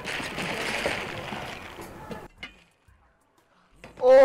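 A wet rag wiping and scrubbing over a car's bonnet, with water sloshing from a bowl; the rubbing stops a little past two seconds in, followed by a single short knock.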